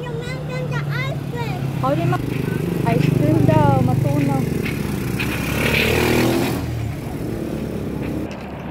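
A motorized tricycle's motorcycle engine running at low revs as it passes close by, loudest about three to four seconds in and gone by about seven seconds.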